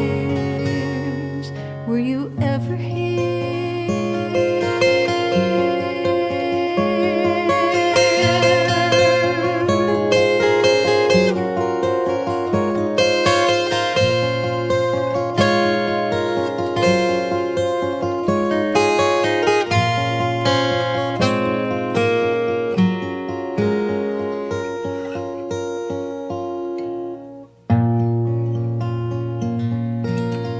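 Two acoustic guitars playing a fingerpicked instrumental passage of a folk song over a steady bass line, after a held sung note fades about two seconds in. The sound drops out briefly near the end, then the guitars carry on.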